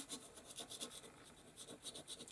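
Faint, quick repeated scratchy strokes of a nearly dry size 3 watercolour round brush, held flat and dragged across hot-pressed cotton watercolour paper to lay in dry-brush texture.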